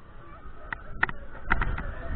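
Wind buffeting the microphone as a Mondial Furioso thrill ride's gondola swings through the air, swelling in the second half, with a string of seven or so short, sharp high-pitched squeaks.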